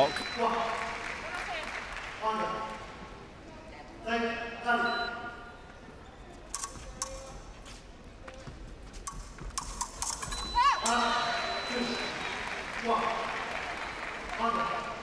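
Fencing bout in a hall: short shouts and calls from the fencers and their teams come several times, with a run of sharp clicks of épée blades and footwork in the middle.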